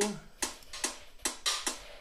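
Drum loop of Roland SH-101 analog-synthesized noise drums: short, high hi-hat hits (shortened, pitched-up white-noise samples) ticking about four to five times a second, with a white-noise snare with a short envelope landing on stronger hits.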